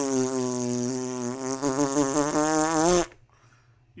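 A steady buzzing tone that lasts about three seconds and then cuts off abruptly.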